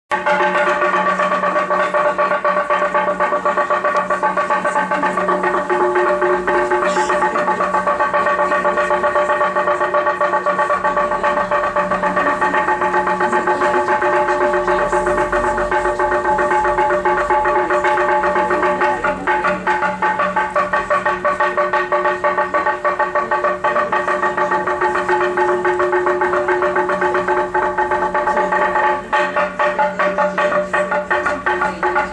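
Church bells ringing in a continuous fast peal, their struck tones ringing on and overlapping into a steady chord.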